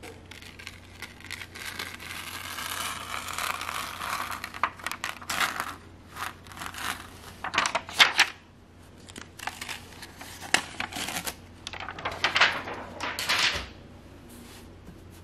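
DTF transfer film peeled off a heat-pressed T-shirt once cooled, in a cold peel. The plastic sheet crinkles and crackles unevenly, with a run of sharp snaps in the second half.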